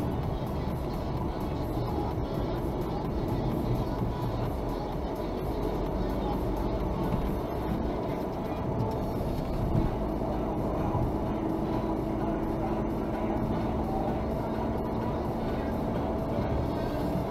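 Inside a moving car's cabin: a steady low rumble of engine and tyres on the road at cruising speed, with music playing underneath.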